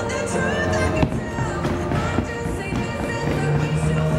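Background music with held notes and a melody. A single sharp knock sounds about a second in.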